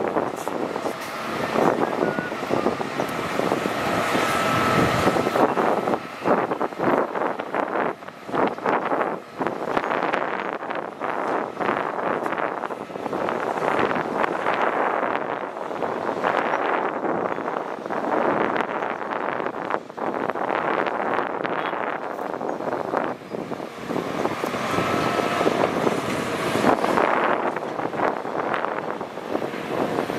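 Hitachi hydraulic excavators working under load, their diesel engines and hydraulics running while the bucket drops soil into a dump truck's steel bed, with frequent crunching and clattering of earth and clods.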